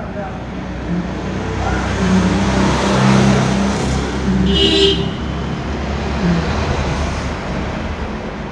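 Road vehicle engine rumble swelling as it passes and fading away, with a short high horn toot about halfway through.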